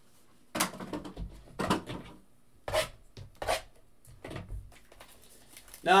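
Trading-card hobby box and its packs being handled and opened on a tabletop: a run of about six short rustles and knocks of cardboard and wrapper.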